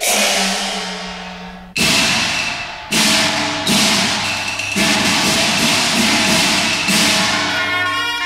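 Cantonese opera percussion: five loud, irregularly spaced crashing strikes, gong and cymbals, each ringing on and slowly dying away, over a low held tone.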